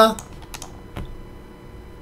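A few light, sharp clicks from computer controls, three close together about half a second in and one more about a second in.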